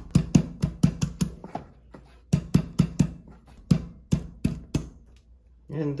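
Kitchen knife handle pounding garlic cloves on a wooden cutting board: a quick run of sharp knocks, about four a second, with a short pause about two seconds in.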